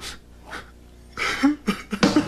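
A man coughing in a few short bursts, the loudest about a second and a half in.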